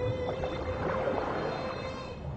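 Humpback whale calls heard underwater: faint rising and falling cries over a steady hum.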